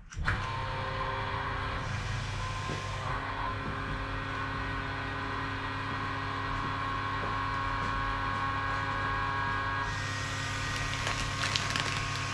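Vacuum pump running with a steady, even hum as it draws down the vacuum bag over a resin-infusion layup. Near the end, plastic bagging film crinkles as it is pulled and smoothed by hand.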